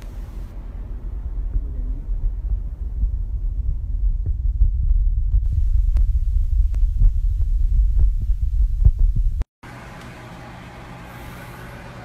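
Wind buffeting a phone's microphone: a loud, uneven low rumble with a few faint clicks. After a sudden cut near the end it gives way to a quieter, steady low hum.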